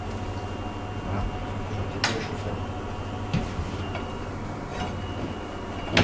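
Steady low hum of kitchen equipment while olive oil heats in an empty frying pan, with a sharp metallic knock about two seconds in as the pan is handled on the hob and a few lighter clicks after it.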